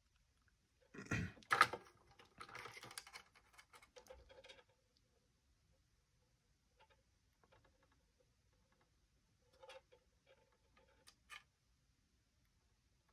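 Handling noises of a plastic toy car body, a small servo and a hot glue gun as the servo is glued in place. Two sharp knocks come about a second in, then some rustling, then a few faint clicks near the end.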